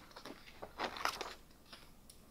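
A page of a wire-bound paper planner being turned by hand: soft paper rustling, strongest about a second in.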